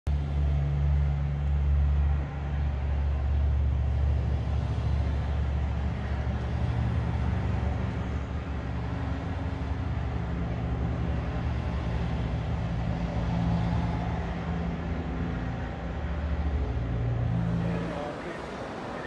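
A low, steady motor rumble with a droning hum that shifts a little in pitch, over a faint background of city noise.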